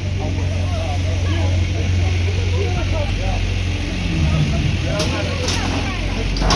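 Hyundai wheel loader's diesel engine running with a steady low rumble as its bucket is brought up to a metal gate, with a few sharp knocks near the end.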